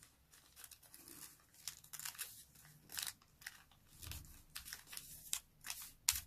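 A sheet of origami colour paper being folded and creased by hand: faint, scattered crinkles and crackles of the paper, with a soft thump about four seconds in.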